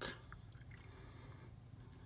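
Faint pouring of canned milk from a plastic measuring cup into a saucepan of melted butter and sugar, barely above the quiet of the room.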